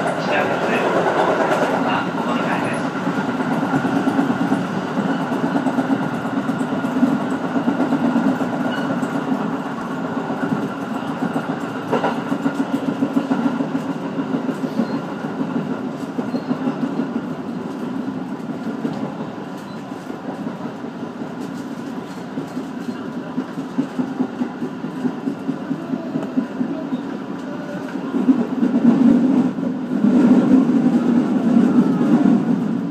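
Cab-area interior sound of a JR Sanin Line electric train running along the track, a steady rumble of wheels and running gear. It grows louder near the end as the train runs into the station.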